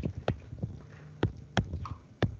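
Pen stylus tapping on a writing tablet while handwriting: about six sharp clicks at uneven intervals, one for each pen-down and lift.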